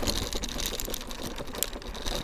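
WideWheel electric scooter with twin 500-watt hub motors pulling away over bumpy grass: a dense, irregular rattle with a faint high whine.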